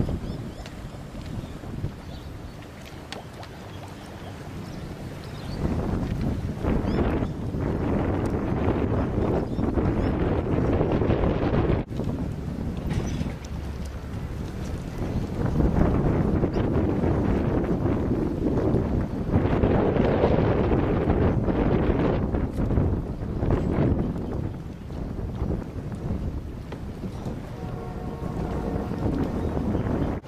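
Gusty wind blowing across the microphone, a continuous rushing noise that swells and eases, quieter for the first few seconds and stronger from about six seconds in.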